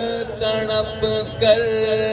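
A male reciter chanting a soz, an unaccompanied Shia elegy, into a microphone over a loudspeaker system. He holds long, slightly wavering notes, with a short break about one and a half seconds in.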